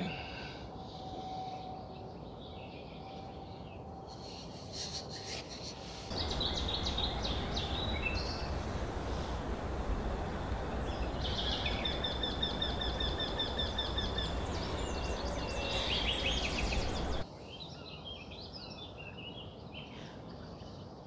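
Small wild birds chirping and calling over a steady outdoor hiss, with a brief run of clicks about four seconds in. From about six seconds in to about seventeen seconds in the background noise is louder, and near the middle a bird gives a trill of rapidly repeated high notes.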